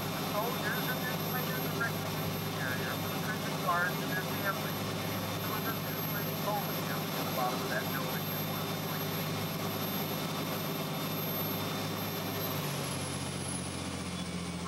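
Tour boat's engine running with a steady hum; its note shifts about three seconds before the end. Faint short high chirps come and go over it, mostly in the first half.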